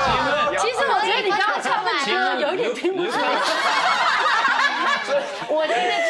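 Several people talking over one another, with some snickering laughter.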